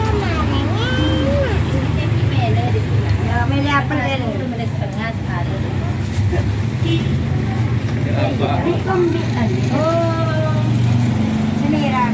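Indistinct voices talking on and off over a steady low rumble from a motor vehicle engine.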